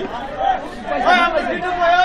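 Several people talking at once, a mix of background voices.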